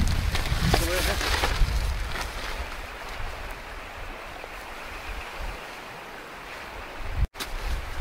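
Rustling of a nylon tent footprint as it is shaken out and spread on the ground, over a low rumble of wind on the microphone. The rustling is heaviest in the first couple of seconds and then settles to a quieter wind hiss, with a short dropout near the end.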